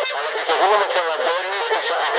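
Medium-wave AM radio broadcast heard through a portable receiver's speaker: a voice talking, with the sound cut off above about 5 kHz.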